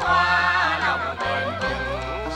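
Women singing a tuồng (Vietnamese classical opera) melody, the voices bending and wavering in pitch, over instrumental accompaniment with steady low notes that change about every half second.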